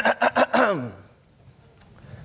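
A man's voice over a microphone finishing a mic check, a few quick syllables ending on one drawn-out syllable that falls in pitch, then low room noise with a faint click near the end.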